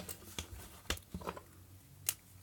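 A few light clicks and taps, scattered and irregular, as a spiral notepad and marker pen are handled and set up for drawing.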